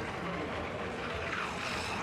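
Skis hissing along the icy inrun track as a ski jumper speeds down the hill, the rush swelling near the end as he nears the microphone.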